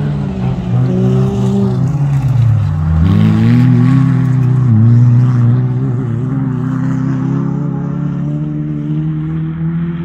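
Stock-hatch autograss car's engine running hard on the dirt track. Its pitch falls as the driver lifts off about two seconds in, then rises again as it accelerates, climbing steadily.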